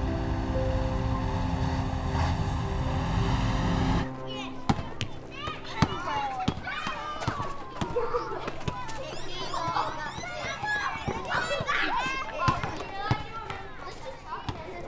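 Music with held notes over a low rumble. About four seconds in it cuts off abruptly to schoolyard ambience: many children's voices shouting and calling, with scattered sharp thuds.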